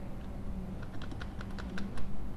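Computer keyboard keys being pressed: a quick run of about half a dozen clicks in the second half, over a steady low hum.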